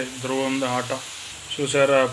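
A puri deep-frying in hot oil in a kadai, sizzling steadily, under a man's voice that is louder and stops briefly about a second in.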